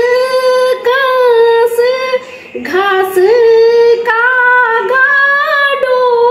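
A woman singing a Garhwali khuded folk song unaccompanied, in long held, gliding notes, with a short break for breath a little past two seconds in.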